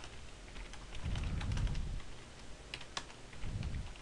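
Typing on a computer keyboard: a quick, uneven run of light key clicks as a line of code is typed, with a low rumble about a second in.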